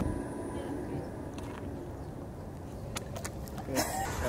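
Low, steady rumble of outdoor background noise, with a few faint clicks.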